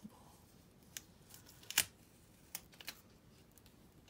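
Fingers handling sticker paper, pressing and aligning a sticker on a paper box extender: a few short, sharp paper clicks and rustles, the loudest a little under two seconds in.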